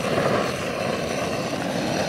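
Handheld gas torch wand burning with a steady rushing flame noise as it is played over the axle and wheel of a plastic wheelie bin.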